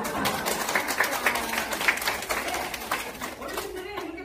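A small seated audience clapping: a few seconds of scattered applause that thins out near the end.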